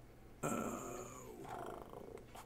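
A man's drawn-out, hesitant "uh" that starts about half a second in and falls in pitch over about a second.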